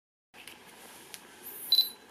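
Canon EOS M6 camera giving a high double beep of autofocus confirmation, after a couple of faint clicks and a short high whir.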